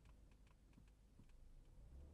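Near silence inside a slowing car's cabin: a faint low rumble with a handful of soft, irregularly spaced clicks.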